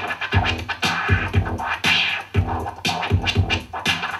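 Vinyl record being scratched by hand on a Vestax turntable, quick back-and-forth cuts over a repeating drum beat.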